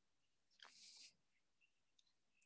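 Near silence, with one faint, brief hiss a little over half a second in.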